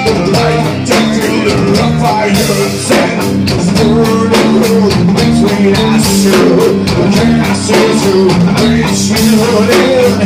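Live rock band playing loud: electric guitar and drum kit, with a bending lead line from the front man at the microphone.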